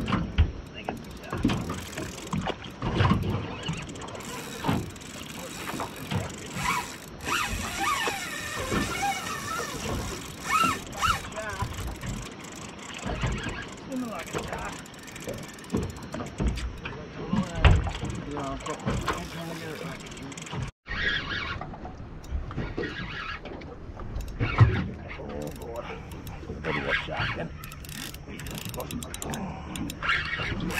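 Spinning fishing reel working as an angler fights a hooked fish, the reel's winding and drag running in irregular spells, mixed with knocks and bumps around the boat and indistinct voices.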